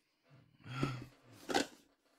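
A man's short breathy hum through the nose, about half a second in, then a brief sharp rustle about a second and a half in as the cardboard box in his hands is turned over.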